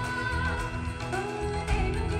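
Live Hindi film song performance: a female singer's held, gently sliding melody over band accompaniment with a strong, steady bass, amplified through a large hall's sound system.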